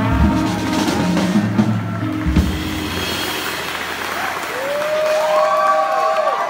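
A small jazz band of piano, upright bass, drums and saxophone plays its final chords, ending on a last hit about two seconds in. Audience applause and cheering voices follow.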